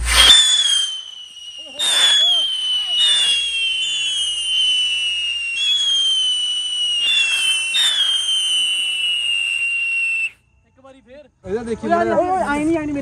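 A whistling firework going off on the ground: a run of shrill whistles, about eight of them, each starting with a sharp burst and sliding slowly down in pitch, overlapping one another. They stop suddenly about ten seconds in.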